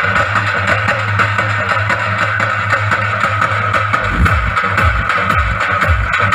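Loud DJ remix of Telangana dappu folk drumming with a heavy electronic beat. The pounding bass drum drops out for the first few seconds and comes back about four seconds in.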